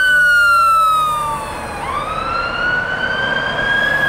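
Ambulance siren on a slow wail: the pitch falls for about two seconds, then climbs back up.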